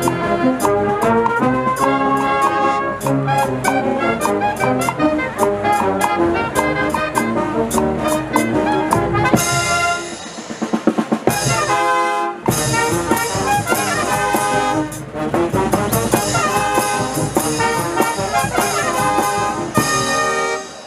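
Brass band playing, with trumpets and trombones over a drumbeat. The music drops briefly about ten seconds in and comes back in full a couple of seconds later.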